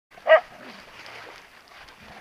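A Siberian husky gives one short, high play bark about a third of a second in, followed by steady rustling of dry leaves as the dogs scuffle.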